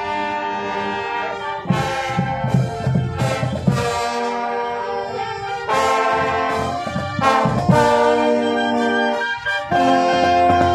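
Marching brass band playing a tune: trumpets, trombones, saxophones and clarinets in held chords, with bass drum strokes coming in at times.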